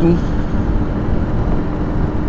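Brixton Rayburn motorcycle engine running at a steady cruising speed, a steady hum under dense low wind and road rumble on the rider's microphone.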